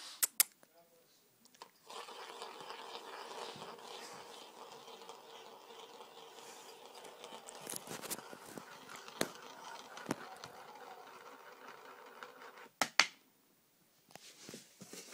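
Child's plastic sand-wheel toy working with a marble in it: a steady rolling rattle starts about two seconds in and runs with scattered clicks. It ends in a few sharp clacks near the end, then stops.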